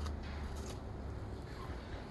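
Quiet room tone with a steady low hum and a single sharp click at the very start; the rooster does not crow.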